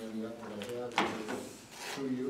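Paper pages being handled and rubbed against a wooden desk near a microphone, with one sharp knock about a second in and a rustle near the end; low voices murmur underneath.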